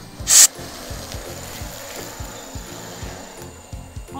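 A single short hiss of hornet-killer aerosol spray (スズメバチサラバ), fired about a third of a second in. It is the loudest sound, over background music with a steady beat.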